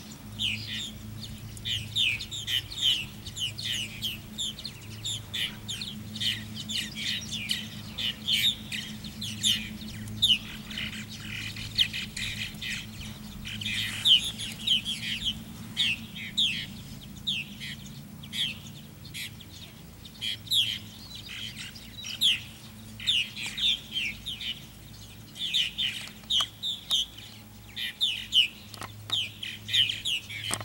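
Birds calling without a break: a dense chatter of short, high, downward-sliding calls, many close together, with a faint steady low hum underneath.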